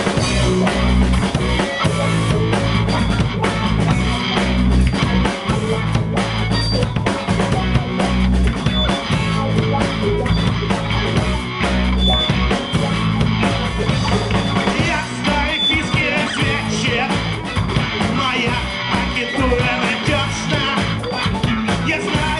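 Live rock band playing a song at full volume: electric guitars, bass guitar and drum kit.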